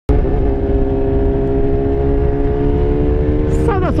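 BMW S1000R's inline-four engine running at a steady cruise, holding a steady note, with heavy wind rumble on the microphone.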